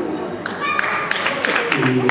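Audience applauding, with a few sharp individual claps standing out, and voices mixed in.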